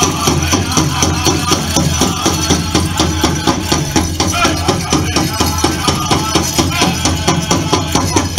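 Powwow drum group playing a fast, even beat on a large drum with singers' voices, and the jingle of fancy dancers' bells over it.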